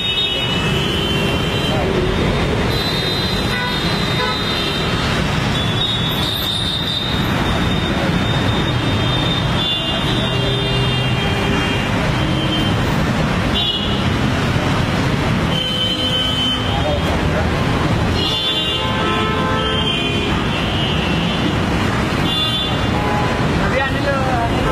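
Busy street ambience: traffic running steadily with vehicle horns honking now and then, and people talking.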